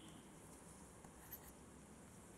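Faint stylus strokes on a tablet-PC pen screen as a circle is drawn, over near-silent room tone, with a brief scratch about a second and a half in.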